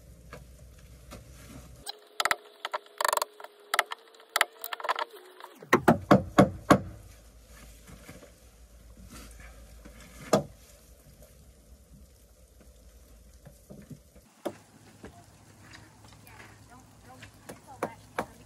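Sharp knocks of work on timber floor joists: a quick run of about six knocks about six seconds in, then a single knock a few seconds later.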